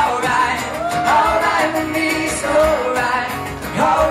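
A man singing live into a microphone while strumming an acoustic guitar, the melody held and gliding across long sung notes.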